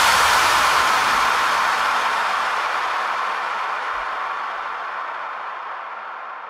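Closing tail of an electronic dance music track: a long hiss of noise, the decay of a final crash or white-noise effect, fading steadily away with no beat or melody left.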